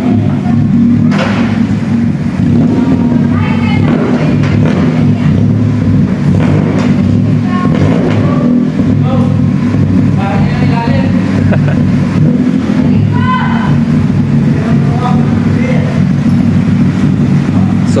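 Car engine idling, a steady low hum that holds one even pitch throughout.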